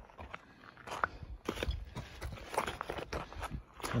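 Footsteps on loose sandstone rubble and grit: irregular crunching steps with small clicks of shifting flat rocks.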